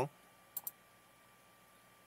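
Computer mouse clicked twice in quick succession, a little over half a second in, selecting a line in a drawing program.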